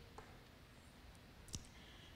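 Near silence in a small room, broken by a faint tick early on and one short click about one and a half seconds in.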